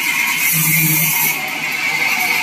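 Sawmill bandsaw machinery running with a steady high whine and a hiss that swells and fades, and a short low hum about half a second in.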